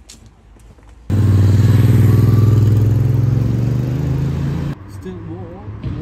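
A loud, steady low engine hum from a motor vehicle, starting abruptly about a second in and cutting off sharply near the end.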